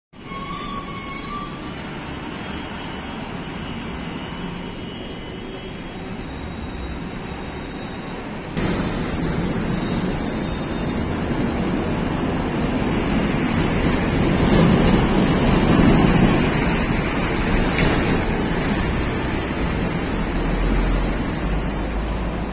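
Highway traffic noise: a steady hiss of vehicles passing on the road. It jumps suddenly louder about a third of the way in and swells as a vehicle goes by in the second half.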